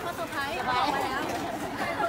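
People talking: indistinct chatter of voices, with no clear words.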